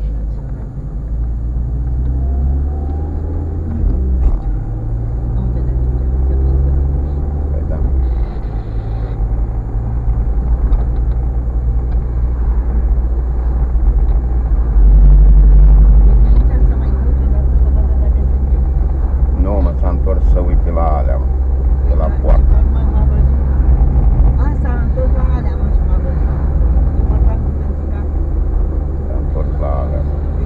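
Engine and tyre road rumble heard inside a moving car's cabin, steady and low, growing louder for a moment about halfway through as the car runs over a patched road surface. Voices talk faintly now and then over it.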